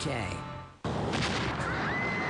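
A promo's closing music fades out, then a sudden loud hit about a second in opens a trailer's sound effects: a few sharp strikes and a steady rushing noise, with a thin whistling tone rising near the end.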